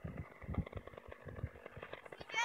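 Faint buzz of a radio-controlled Yak 54 aerobatic plane's engine, with wind buffeting the microphone in irregular low thumps.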